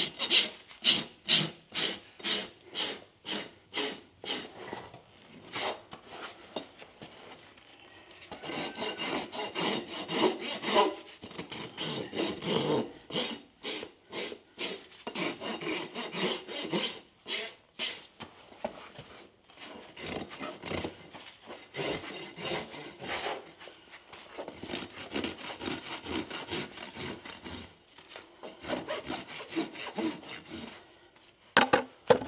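Farrier's rasp filing a horse's unshod hoof, in separate back-and-forth strokes about two a second at first, then a denser run of strokes, a short pause, and more strokes near the end.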